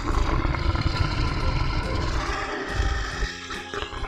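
A lion roaring deeply over light children's backing music, easing off near the end.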